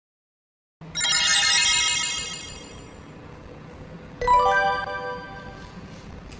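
Intro jingle: a bright, shimmering chime comes in about a second in and fades over a couple of seconds, then a second, lower chime-like musical sting sounds about four seconds in and dies away.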